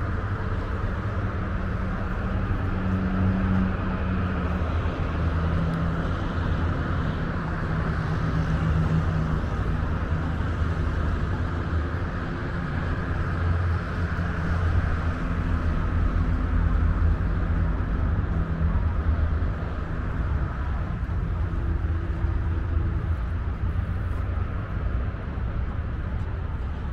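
Steady low rumble of distant road traffic, with engine tones rising and fading as vehicles pass.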